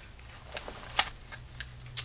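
Pages of a handmade paper bag scrapbook album being handled and turned, quiet paper movement with a sharp click about a second in and a smaller one near the end.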